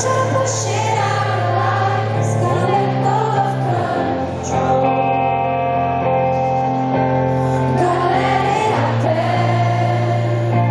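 Live rock song: a woman singing lead over sustained keyboard chords, with a large arena crowd singing along.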